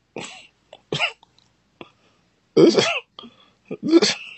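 A person clearing their throat in two short bursts within the first second, then a brief laugh about two and a half seconds in.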